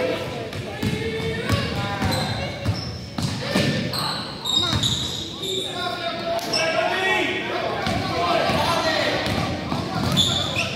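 A basketball being dribbled on a hardwood gym floor, bouncing repeatedly among scattered knocks from play on the court.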